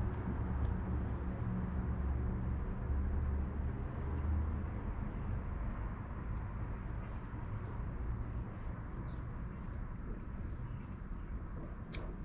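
Steady low rumble of outdoor urban background noise, a little heavier in the first half, with a few faint ticks.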